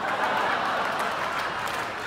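A large audience laughing and applauding together, a steady mass of laughter and clapping.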